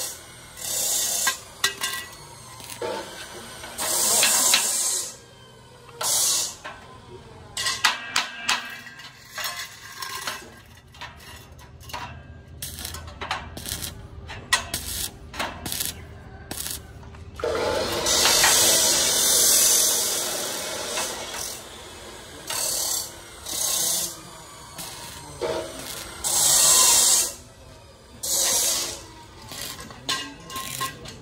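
Stick (arc) welding on square steel tubing: bursts of crackling, hissing arc a few seconds apart, the longest running about three seconds a little past the middle. Between the welds, strings of sharp clicks and taps.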